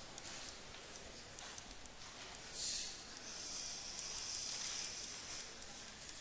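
Faint scratching and light taps of a stylus writing on a tablet computer's screen, over a steady hiss.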